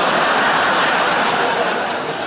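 Large theatre audience laughing, loud and steady, beginning to fade near the end.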